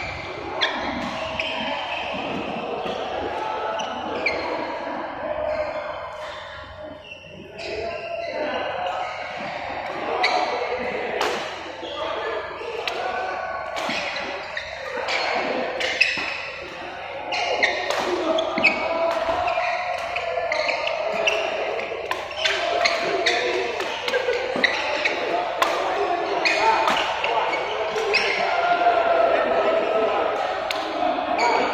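Badminton rally: rackets striking the shuttlecock in repeated sharp hits at an irregular pace, echoing in a large sports hall.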